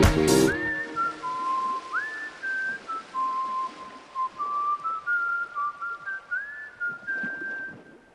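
A brass-led band piece ends about half a second in. Then a lone person whistles a slow tune, each phrase sliding up into a held note, over a light hiss, stopping at the very end.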